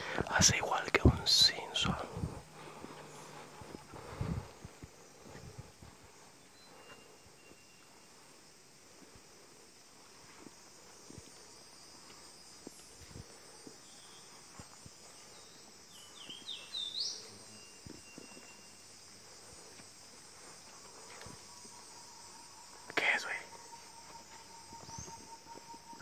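Rainforest ambience: a steady high-pitched insect drone throughout, with footsteps and knocks on the dirt trail in the first couple of seconds. A short rising bird chirp comes about two-thirds of the way in, and a long steady whistled note sets in near the end.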